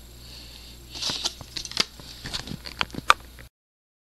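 Small clicks and rustles of a plastic model-kit part being handled against the cardboard kit box, over a faint steady hum, with one sharper click near the end. The sound cuts off abruptly about three and a half seconds in.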